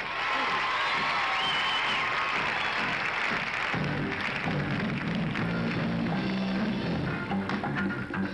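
Studio audience applauding and cheering, then a little under four seconds in a live band strikes up an upbeat number with bass guitar, drums and electric guitar in a steady rhythm.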